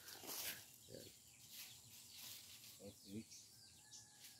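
Near silence: faint outdoor ambience, with a brief rustle just after the start and a few short, faint voice-like sounds about a second in and around three seconds.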